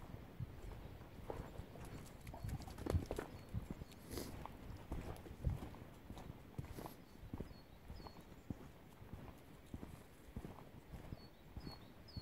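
Footsteps of a walker crunching along a muddy gravel track, picked up by a phone in a jacket chest pocket, a steady run of short scuffs and knocks. Near the end a bird starts calling with a short note repeated a few times a second.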